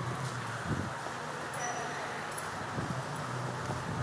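Steady background noise of a parking garage, with two soft low thumps, one under a second in and one near three seconds.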